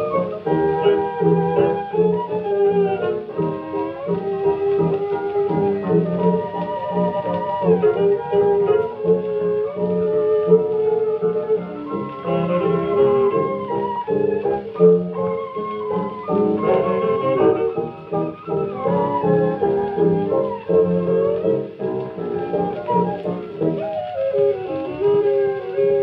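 A 1925 jazz dance band recording played from a vinyl LP reissue through hi-fi speakers: an ensemble over a steady dance beat.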